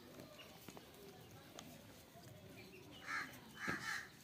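Two short harsh bird calls, caw-like, about half a second apart near the end, over a few faint clicks.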